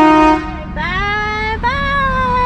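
Truck-mounted train horn: a loud, steady multi-note blast that cuts off about a third of a second in. A thinner single-pitched tone follows; it rises, breaks off briefly, then comes back and slowly falls.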